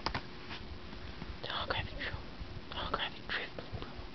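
A person whispering in two short bursts, with a sharp click from the clear plastic card packaging being handled at the start.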